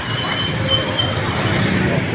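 Street traffic: motor vehicle engines running close by, a steady low rumble with no clear single event.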